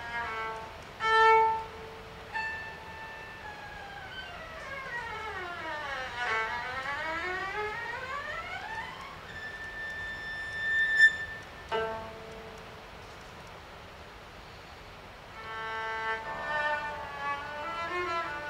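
Cello played with a bow: held high notes, and a long run in the middle that sinks in pitch and then climbs back up.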